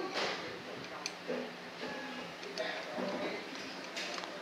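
Light metallic clicks and scrapes of a screwdriver working inside the aluminium housing of a VE distributor diesel injection pump, nudging the eccentric ring of the vane feed pump into position. A louder scrape comes right at the start, then scattered small clicks.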